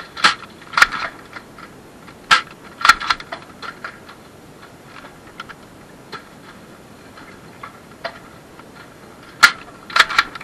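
Sharp pops and clacks of foam-dart Nerf blasters in a shootout: a quick run of loud ones in the first three seconds, then scattered quieter ones, and one loud pop near the end.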